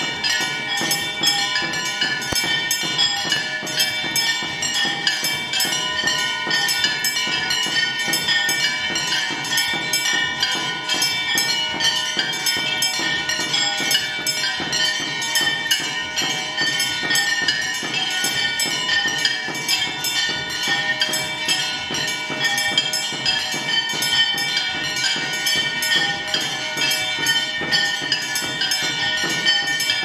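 Temple bells ringing fast and without a break, with percussion, a dense metallic clangour of devotional music.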